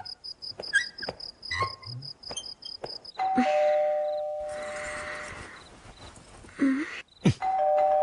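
A two-tone ding-dong doorbell rung twice, about three seconds in and again near the end, each chime ringing on as it fades. Before the first chime, crickets chirp in an even, rapid, high pulse.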